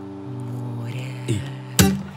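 Acoustic guitar chords ringing between sung lines, a new chord coming in early and a sharp strum near the end.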